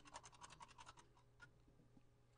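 Paintbrush making a quick run of faint, scratchy ticks for about a second, then stopping.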